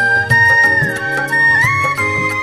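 Instrumental interlude of a Hindi devotional bhajan: a high melody line that holds notes and glides down and back up between them, over a steady beat of about four strokes a second.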